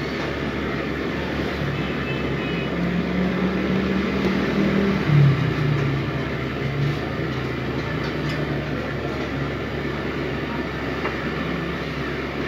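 Steady low rumbling background noise, with a low drone that swells and wavers through the middle.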